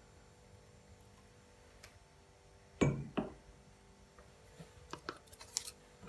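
Quiet kitchen handling over a faint steady hum: two short knocks close together about three seconds in, then a few small clicks and clinks near the end.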